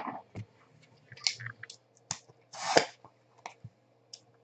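Hands handling and opening a small cardboard trading-card box: scattered light clicks and taps, with a short scraping rasp a little before three seconds in.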